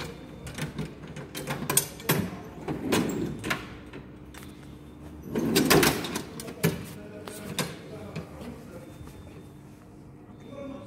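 Knocks, clicks and scraping of metal parts and tools being handled on a workbench, with a longer, louder scrape or rattle about five and a half seconds in, over a steady low hum.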